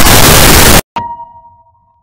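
A loud hiss of static cuts off abruptly. After a brief gap comes a single metallic clang that rings out at one main pitch and fades over about a second.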